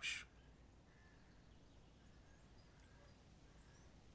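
Near silence: faint room tone, just after a spoken word ends.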